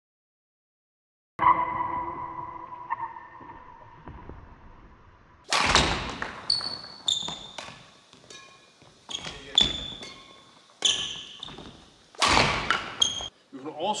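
Badminton footwork and strokes on an indoor court. A sudden sharp hit rings out and dies away over about two seconds. From about five seconds in comes a run of loud thuds of feet landing, with short shoe squeaks, about every second and a half, echoing in the large hall.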